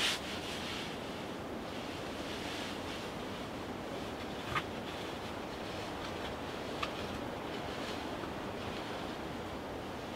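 Steady wind through the woods' foliage, an even rushing hiss. Three short sharp clicks or snaps cut through it: one at the start, one about halfway, and a fainter one a couple of seconds later.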